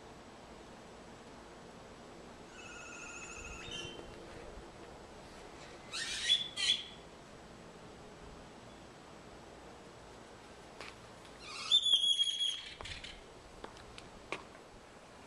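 A bird calling in short, wavering bursts three times: a faint call about three seconds in, then louder calls around six and twelve seconds, over a steady faint outdoor background.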